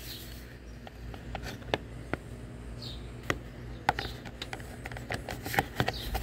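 Scattered light clicks and taps of a hard-plastic roof-rack crossbar foot being handled and pressed into place on the car roof, coming more often towards the end.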